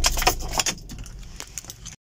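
A bunch of keys jangling and clicking as they are handled inside a car, loudest in the first half-second. A low steady hum stops about half a second in.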